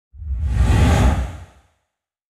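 A whoosh sound effect with a deep rumble underneath, swelling up just after the start, peaking about a second in and dying away by about a second and a half in.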